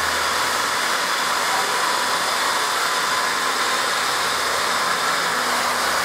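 Handheld electric car polishers running steadily on a car's painted hood: a continuous whirring hiss with a faint steady whine.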